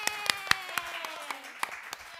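Hands clapping quickly and unevenly, several claps a second, under a woman's long, drawn-out vocal note that slowly falls in pitch; both die down near the end.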